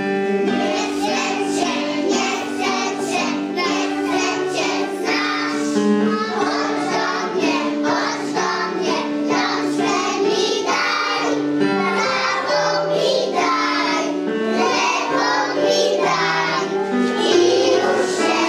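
A group of young children singing a song together over a keyboard accompaniment.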